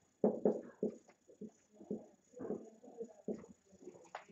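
Soft, indistinct murmuring voice in a small room, loudest in the first second and then trailing off into scattered quieter sounds.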